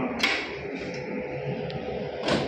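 Handling at the open glass inner door of a laboratory incubator: one short, sharp clack about a quarter-second in, over a steady low hum.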